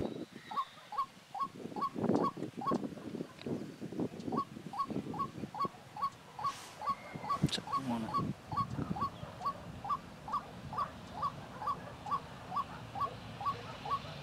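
An animal calling with one short note over and over at a steady beat, about two and a half calls a second. An irregular jumble of lower sounds runs under it for the first eight seconds or so.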